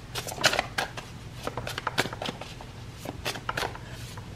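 Tarot cards being shuffled by hand: a quick run of light, irregular card snaps and clicks.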